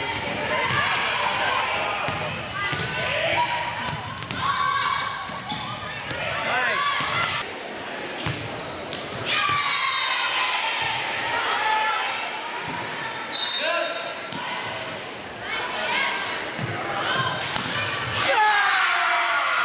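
Volleyball game sounds: players calling and shouting and spectators' voices, with several sharp knocks of the ball being struck.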